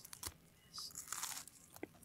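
A few short, faint crunches as a crisp, flat cracker is bitten and chewed close to the microphone.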